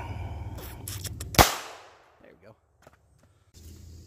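A single shot from a .32 ACP pistol firing a steel-core armor-piercing round: one sharp report about one and a half seconds in, with a short ring-out after it.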